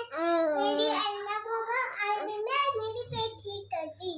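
A young child singing in drawn-out, gliding notes, with a faint low hum underneath.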